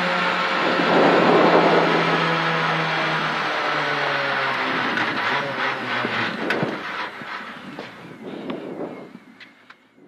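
Renault Clio R3C rally car's engine heard inside the cabin, coming off the throttle and dropping in pitch as the car slows after the stage finish. It then runs low with a few knocks and clicks, fading out near the end.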